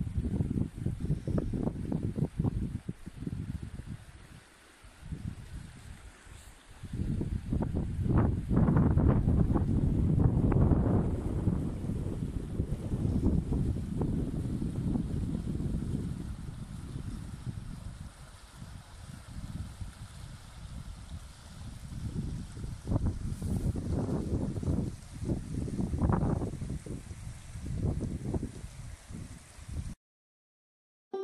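Wind buffeting the microphone in uneven gusts, heaviest in the middle stretch, over the faint steady rush of a shallow river running over gravel.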